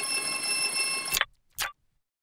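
Cartoon alarm clock ringing: a steady, high metallic ring that cuts off sharply a little past halfway, followed by a brief blip and then silence.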